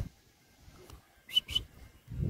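Two short, high whistle-like chirps in quick succession a little over a second in, each sliding up and then holding briefly.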